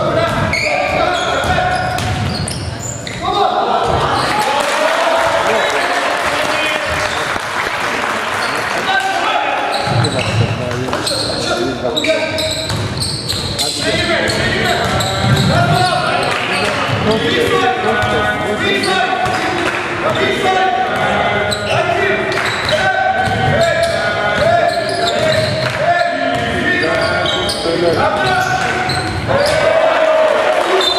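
A basketball bouncing on a hardwood gym floor during play, repeated dribbles, over a constant babble of voices in a large hall.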